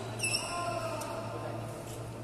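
A sports shoe squeaking briefly on the court floor about a quarter-second in, one short high squeal, with faint voices in the hall afterwards.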